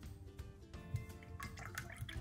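Soft background music, with a single sharp click about halfway through. Near the end, a paintbrush is swished in a glass cup of rinse water.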